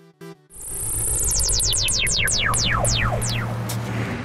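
Synthesized electronic sound effect: short pulsing notes stop about half a second in, then a hiss gives way to a run of quick falling sweeps that come further apart as they go, over a steady low hum.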